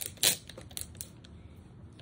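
Small clicks and taps from paper-craft supplies being handled: one sharp click just after the start, then a few faint ticks.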